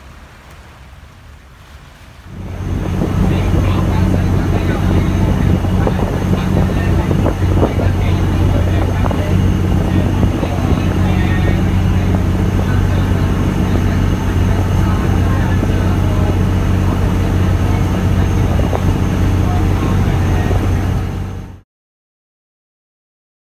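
Boat engine running steadily, a loud low hum with water and wind noise. It starts suddenly about two seconds in and cuts off abruptly just before the end.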